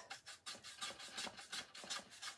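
Paintbrush dry-brushing paint onto wooden slat boards: the nearly dry bristles scratch across the wood in quick, quiet back-and-forth strokes.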